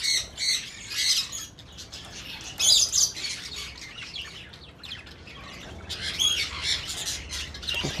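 Budgerigars chirping and squawking in short, high-pitched bunches of calls: one at the start, one about three seconds in and one around six seconds in.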